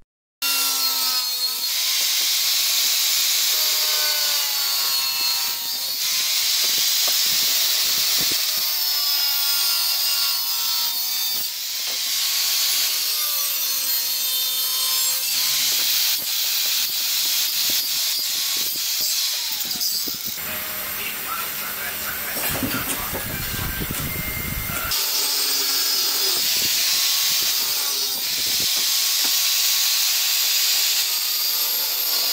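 Handheld electric angle grinder with a thin cutting disc cutting through a metal bar. The motor's whine dips in pitch as the disc bites and rises again as it eases off. A stretch of deeper rumbling comes about two-thirds of the way through.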